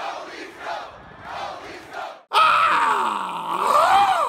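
A crowd shouting for the first two seconds. Then, after a brief gap, a man lets out one loud, long, drawn-out yell whose pitch dips and then climbs.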